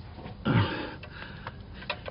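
A man's short, sharp breath about half a second in, then a few light clicks.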